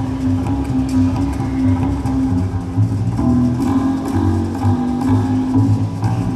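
Live bebop jazz quartet of saxophone, piano, double bass and drums playing, from an audience recording. Low double-bass notes change under held melody notes, with light, regular cymbal strokes from the drums.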